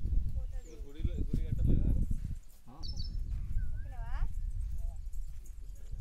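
Low rumble on the phone's microphone, with indistinct voices in the first two seconds and a short pitched call that falls in pitch about four seconds in.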